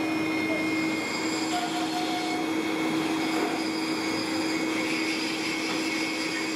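Electric air blower forcing air into a coal-fired foundry furnace: a steady rush of air with a constant hum.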